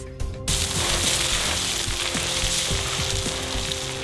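Background music with a steady hiss of noise that starts suddenly about half a second in.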